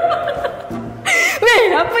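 A person chuckling and laughing, then a spoken word, over background music.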